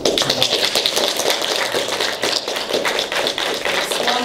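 Audience applauding: many hands clapping in a dense, irregular patter.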